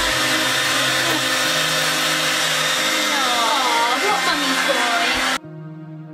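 Handheld hair dryer running, a steady rush of blown air, which cuts off suddenly near the end, leaving background music.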